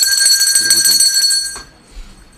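A small metal hand bell ringing steadily with a bright, high, clangy tone for about a second and a half, then stopping suddenly.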